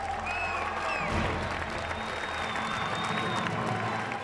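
Studio audience applauding, with a music bed playing underneath.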